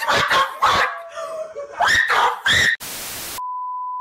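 A string of short, loud yelps, then, a little under three seconds in, a burst of TV static followed by the steady beep of a colour-bar test tone, which cuts off at the end.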